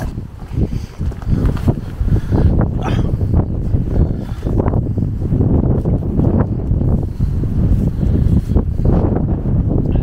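Wind buffeting the microphone: a loud, uneven low rumble that surges and drops throughout.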